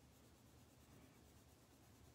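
Very faint, steady scratching of a coloured pencil glazing blue over watercolour on paper, smoothing out the colour underneath.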